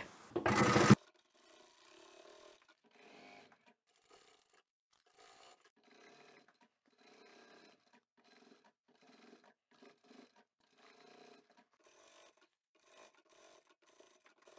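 Near silence with only very faint, irregular sounds, after a short loud burst of noise in the first second.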